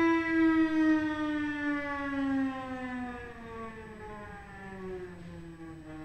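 Solo cello holding one bowed note and sliding it slowly down about an octave in a long glissando, settling on the lower pitch near the end as it fades.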